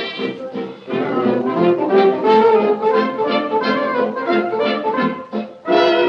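Dance band music played from an old Durium gramophone record, a rhythmic band number with the sound cut off above the treble like an early recording.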